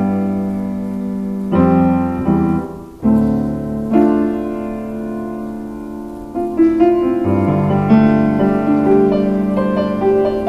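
Grand piano being played: slow chords struck and left to ring and fade, then a busier run of quicker notes in the upper range from a little past halfway.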